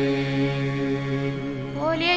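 Devotional chanting: one long note held at a steady pitch, fading a little near the end.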